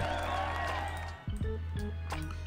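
Instrumental background music: steady low sustained tones with a few short melodic notes.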